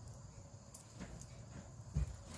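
Knitting needles clicking faintly and irregularly as knit stitches are worked, with a low thump near the end.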